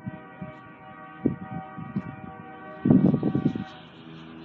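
Distant Union Pacific diesel locomotive's air horn sounding one long multi-note chord that cuts off just before the end. Loud low rumbling bursts run under its last second.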